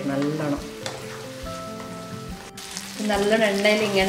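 Chicken pieces in a thick masala sizzling in a frying pan as they are stirred with a spatula. Background music with a regular beat and a singing voice plays over it, loudest near the end.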